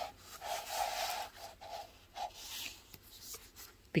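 Sheets of cardstock sliding and rustling against one another as a pile of cardstock shims is handled and laid in place, in several short rubbing strokes.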